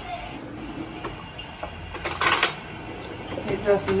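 A metal utensil scraping and clinking in the stainless-steel inner pot of an Instant Pot, with one louder scrape about halfway through and a few light clicks near the end.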